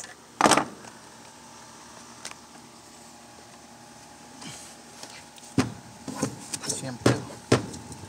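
Hand-work noise from pliers and fingers on a small two-stroke pole saw's plastic housing and fuel hose: a brief sweeping scrape about half a second in, then a run of short clicks and knocks in the second half.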